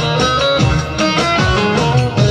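Bağlama (saz, a long-necked Turkish lute) playing a quick plucked melodic run as an instrumental passage between sung lines, over a steady low beat.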